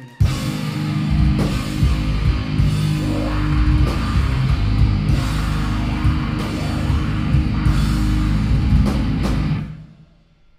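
Metal band playing live: distorted guitars, bass and drums at full volume, stopping abruptly near the end.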